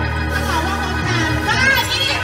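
Live gospel church music: a steady organ-and-bass chord that shifts about a second in, with a voice singing over it.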